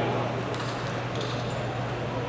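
Table-tennis hall background: a steady low hum with a few faint, scattered clicks of ping-pong balls and distant voices.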